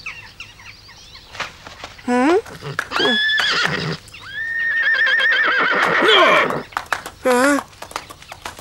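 Horse neighing: a short high call about three seconds in, then a long, wavering whinny from about four and a half seconds in, the loudest sound here.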